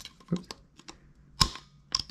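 Takedown pin of a Grand Power Stribog SP9A1 being slid through the receivers. A few light taps and scrapes, then a sharp click about one and a half seconds in and another near the end as the pin goes home.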